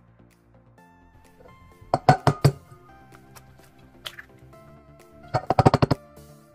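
Eggs tapped against the rim of a stainless steel mixing bowl to crack them: a few sharp clinks about two seconds in, then a quicker run of taps near the end, over background music.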